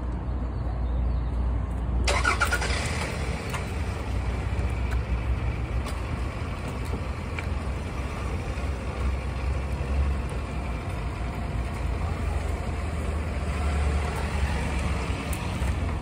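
Street traffic: a steady low engine rumble, with a louder vehicle noise rising about two seconds in and carrying on.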